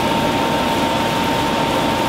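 Saucepan of Coca-Cola at a rolling boil, reduced to a thick syrup, with a steady noise and a constant thin high hum running through it.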